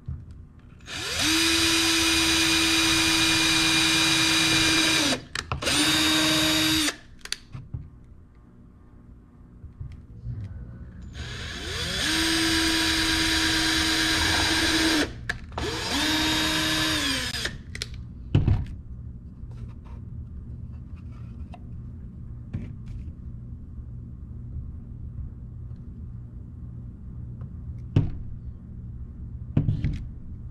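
Cordless drill pre-drilling pilot holes through a wooden roof board into the sides of a bird feeder. It runs in four spells, two pairs, the first about four seconds long; each spins up to a steady whine and winds down. A few light knocks follow as the pieces are handled.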